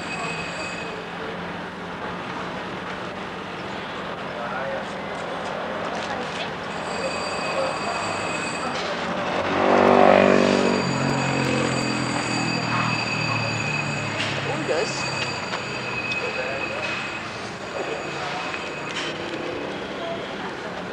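A motor vehicle passing about ten seconds in, its engine note falling in pitch as it goes by, over steady outdoor background noise.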